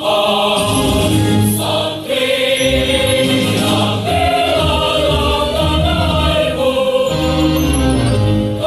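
Music with a choir singing sustained, shifting notes, loud and steady throughout.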